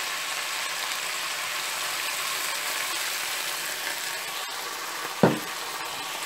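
Sliced onion, tomato and yellow pepper sizzling steadily in hot oil in a non-stick frying pan, just dosed with soy sauce and red wine vinegar and stirred with a wooden spatula. A brief, louder sound comes near the end.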